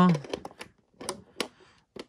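Sharp plastic clicks, about five spread over two seconds, as the toy locker's small plastic doors are snapped shut and a plastic key is fitted into their locks.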